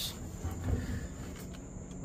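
A steady high-pitched whine with a low hum beneath it, continuous background with no distinct event.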